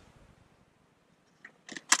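Mostly quiet, then one small click and, near the end, a quick cluster of sharp clicks and a knock from a plastic inline blower housing being handled; the blower is not running.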